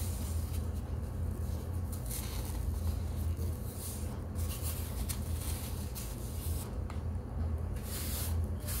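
Fingers rubbing and scraping powder on a plate close to the microphone, in short irregular strokes, over a steady low hum.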